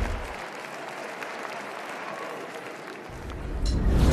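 Audience applauding, an even clatter without voices. Music with a low bass fades in near the end.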